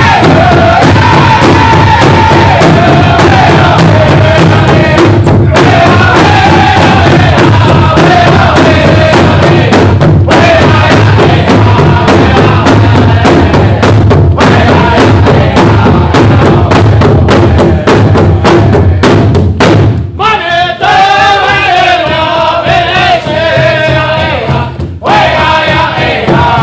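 Powwow drum group: several men striking a large hide-covered drum together in a steady beat while singing high, descending lines. About twenty seconds in, the drumming softens and the singing carries on.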